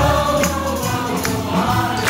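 A large stage cast singing together, holding long notes, over upbeat pop accompaniment with sharp percussion hits on the beat.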